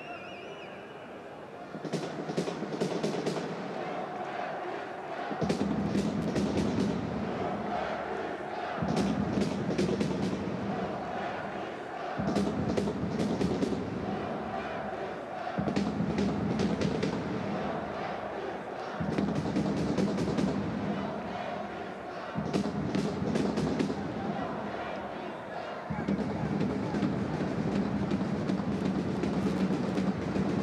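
Rhythmic drum-led music with a phrase of quick drum strikes over a sustained low tone, repeating about every three and a half seconds; it starts about two seconds in.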